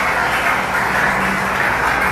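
Steady murmur of a packed theatre audience talking before a show, heard from backstage.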